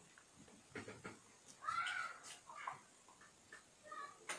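A cat meowing once, a short call that rises and falls in pitch, with a few faint taps around it.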